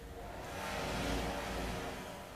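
Faint, low ambient whoosh that swells over about a second and then holds steady.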